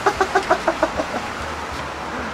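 A man laughing in a quick run of short, evenly spaced 'ha-ha' pulses lasting about a second.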